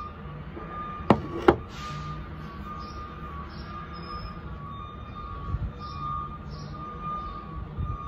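Garbage truck's reversing alarm beeping in a steady repeated pattern over the low rumble of its engine. Two sharp knocks close together about a second in.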